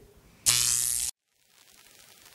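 A loud, even electric buzz about half a second long, starting about half a second in and cutting off abruptly into silence.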